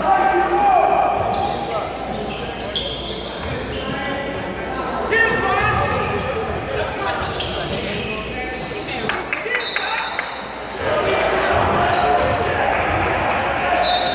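Basketball game on a hardwood gym floor: the ball bouncing, with a few brief high squeaks near the end and voices of players and spectators calling out, all echoing in a large hall.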